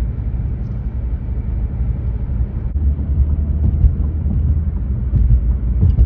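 Car driving along a road, heard from inside the cabin: a steady low rumble of engine and road noise that gets a little louder in the second half.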